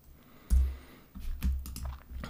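Key presses on a computer keyboard close to the microphone: a sharp click with a heavy low thud about half a second in, then a few softer clicks and thuds in the second half.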